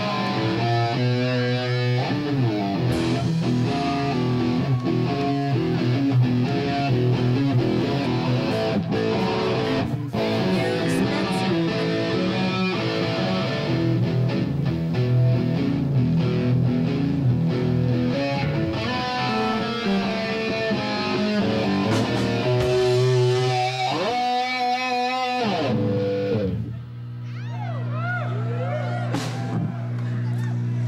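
Electric guitar played loosely through an amplifier between songs: scattered picked notes and chords over a steady low drone. Near the end the playing breaks off briefly and turns to gliding, wavering tones.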